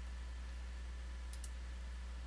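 A computer mouse button clicked, a quick double tick about one and a half seconds in, over a steady low hum.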